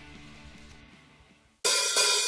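A hardcore punk band's studio recording starting: a faint, fading tail, a brief silence, then cymbals and hi-hat come in suddenly about a second and a half in.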